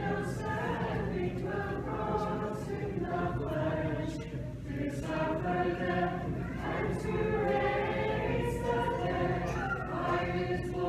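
Orthodox church choir singing liturgical chant unaccompanied, in long held phrases with a brief easing a little before the middle.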